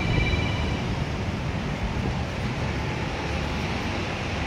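Steady low rumble and hiss of background noise, with a brief high-pitched tone in the first second.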